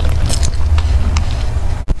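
A person gulping a drink from a plastic bottle. The swallows come through a clip-on microphone as a steady low rumble, with a few faint clicks and a brief break near the end.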